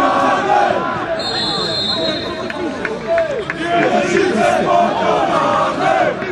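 Several voices shouting over one another at a football match: spectators and players calling out during play.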